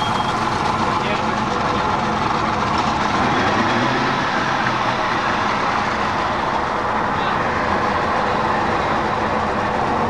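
A motor launch's engine running steadily, with indistinct talk over it.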